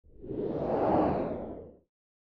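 A whoosh sound effect for an animated logo reveal. It swells to a peak about a second in and fades out just before two seconds.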